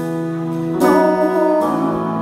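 Live band music: held chords from several instruments, with a new chord coming in just under a second in and another shortly before the end.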